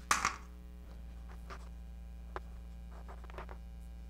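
Chalk clacking on a blackboard's chalk tray as it is picked up, then scattered short taps and scrapes of chalk writing on the blackboard, over a steady low mains hum.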